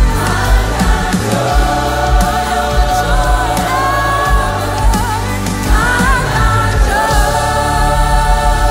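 Gospel choir with a lead singer singing 'I've got Jesus, so I've got joy' and then 'I've got joy', backed by a band with bass and a steady drum beat.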